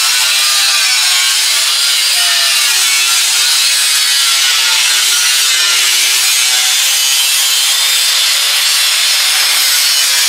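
Abrasive cutting wheel slicing through a used steel car fender: a continuous grinding hiss with a motor whine that wavers in pitch as the wheel bites into the sheet metal.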